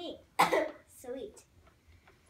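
A girl coughs once, sharply, about half a second in, followed by a brief bit of voice.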